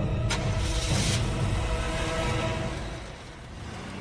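A car engine running as the car moves off slowly, under a fading held music tone. The sound dies down about three seconds in.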